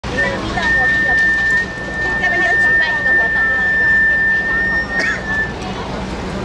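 A hand whistle blown in one long, steady, high blast of about five seconds, cutting off shortly before the end, over people chatting and a low steady hum.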